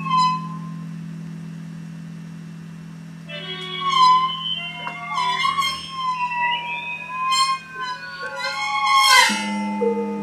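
Experimental music on suspended gongs and cymbals played with mallets. A steady low drone holds under wavering, gliding ringing tones, with several struck accents from about three seconds in. The drone steps up in pitch near the end.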